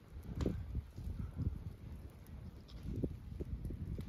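Irregular low thuds and rustling of footsteps and camera handling in dry leaf litter, with a few faint sharp cracks.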